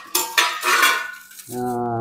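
Stainless steel plates and serving bowls clattering and clinking on a tiled floor as a plate is set down, with a brief metallic ring. Near the end a man's voice gives a short, steady held sound.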